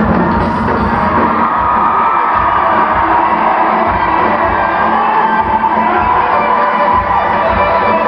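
A rock band playing live with no singing: a steady drumbeat under sustained guitar or keyboard lines. The audience recording sounds muffled.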